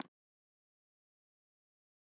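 Silence: the sound track is cut to nothing, with no room tone.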